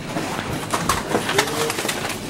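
Metal wire shopping carts rattling and clanking as they are handled and pushed together, with a short low-pitched tone about three-quarters of the way in.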